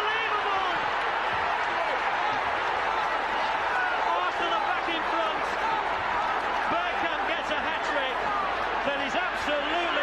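Football stadium crowd, a steady roar of many voices.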